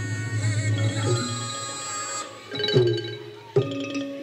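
Thai traditional ensemble music accompanying a khon dance: a sustained, wavering melody over a low steady tone, with sharp drum strokes near the end.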